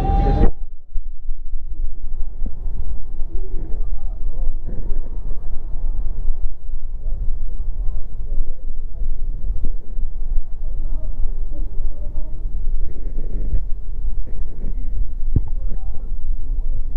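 A steady low rumble with faint chatter of voices in the background.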